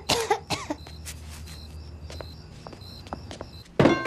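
Hard-soled shoes tapping on a concrete sidewalk, with a short cough-like vocal sound at the start and a loud thump near the end. A faint high chirping repeats in the background.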